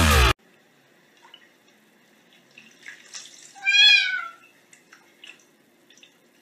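Electronic dance music cuts off just after the start. Then a cat meows once, a single drawn-out meow just past the middle, over faint small knocks and rustles.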